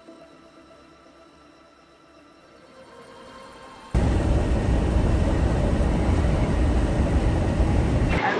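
Background music fading out, then, about four seconds in, a sudden cut to loud, steady road noise inside a diesel motorhome's cab at highway speed: a low rumble of engine and tyres with wind noise.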